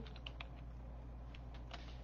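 Faint, scattered clicks of computer keys, a few in quick succession about a quarter-second in and a few more near the end, over a low steady electrical hum.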